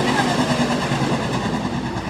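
USRA Hobby Stock race cars' engines running on a dirt oval: a steady drone of several cars, with one engine's pitch sliding down as it passes in the first second.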